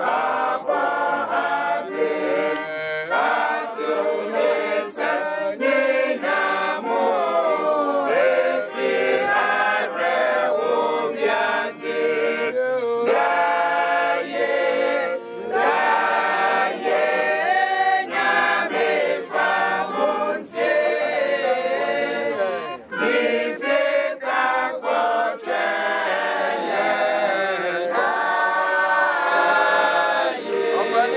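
A robed church choir and mourners singing a hymn together, many voices in steady, continuous song.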